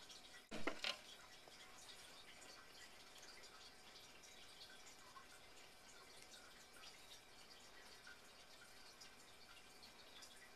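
Near silence with faint dripping of a whisked egg-and-milk mixture poured over bread slices, and two brief knocks about half a second in.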